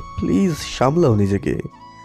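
A person's voice making two short sounds that rise and fall in pitch, over soft background music; after about a second and a half only the music remains.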